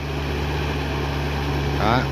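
Yanmar 494 tractor's diesel engine running steadily under load as it tills a flooded rice field on cage wheels, a low steady drone.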